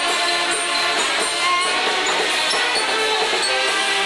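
Mummers string band playing a tune, banjos and saxophones sounding together at a steady level.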